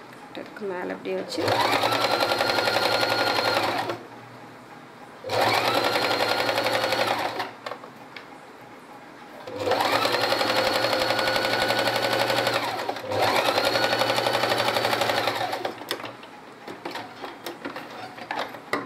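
Electric domestic sewing machine stitching in four runs of a few seconds each, the motor rising in pitch as it speeds up at each start, running steadily, then slowing to a stop. Fabric handling and small clicks fill the pauses and the last few seconds.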